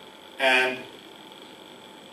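A man's voice through a microphone, one short word or filler sound about half a second in, then room tone with a faint steady hum.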